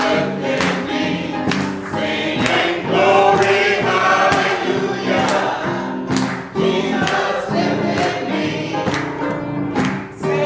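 Church choir singing an upbeat gospel chorus in harmony, with hand claps on the beat about once a second.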